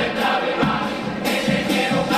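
A Cádiz Carnival chirigota, a male comic choir, singing in unison to Spanish guitar accompaniment, with a beat of percussion hits.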